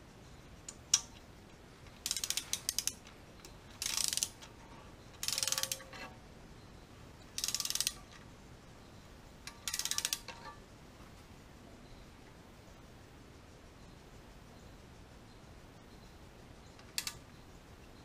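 Ratchet wrench clicking in five short bursts of quick ratcheting as the bolt on an LS engine's oil pickup tube support leg is tightened toward 18 foot-pounds, then one sharp click near the end.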